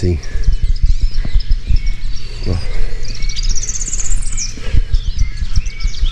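A small bird sings a quick trill of short notes climbing in pitch, about three seconds in, over a constant low rumbling noise on the microphone.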